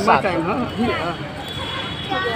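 People's voices talking, indistinct speech with no other clear sound.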